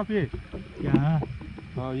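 Men's voices speaking Hindi in short phrases, with no other distinct sound standing out.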